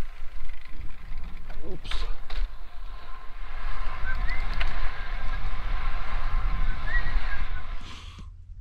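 Wind buffeting a wired lapel microphone while riding a Cannondale SuperSix Evo road bike, with a steady low rumble and the hiss of tyres rolling on asphalt.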